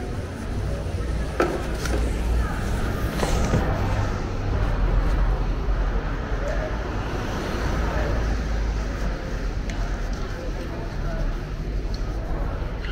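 City street traffic: a steady low rumble of vehicles, swelling as a car drives past about halfway through, with a few short clicks early on.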